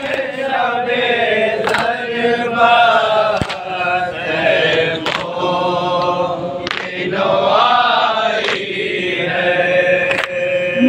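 A group of men chanting an Urdu noha (mourning lament) together. Sharp collective slaps from palms striking chests (matam) fall in time with it, about every second and a half to two seconds.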